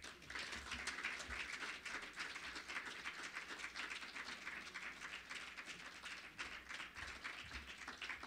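Audience applauding, a dense patter of many hands clapping that thins out toward the end.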